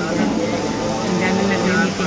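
A woman talking, over the steady background noise of a busy roadside with traffic.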